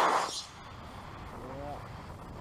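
The rushing roar of a model rocket motor dies away within the first half second as the rocket climbs off the pad. Low outdoor background follows, with a short voice about one and a half seconds in.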